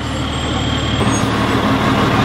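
Fire engine's diesel engine running as the truck rolls slowly past close by, a steady low rumble that grows slightly louder.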